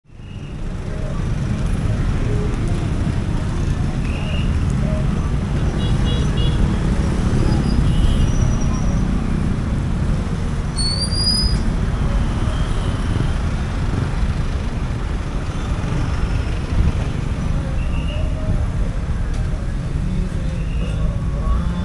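Busy street ambience: steady road-traffic rumble with faint scattered voices, fading in over the first second or so. A few short high tones and a brief rising chirp come through about eleven seconds in.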